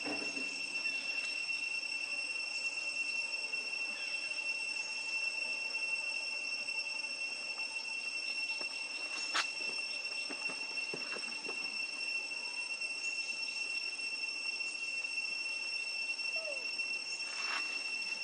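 Insects droning in a steady high-pitched tone, with one sharp click about nine seconds in.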